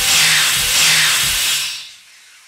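News-channel outro jingle: a loud electronic swell of rushing, hissing noise with rhythmic pulses and short low tones, fading out near the end.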